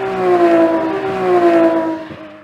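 Vehicle sound effect: a steady engine-like tone that slowly drops in pitch, over a rushing noise, fading away just after the scene changes.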